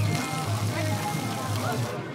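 Background music with a pulsing bass beat over faint background voices.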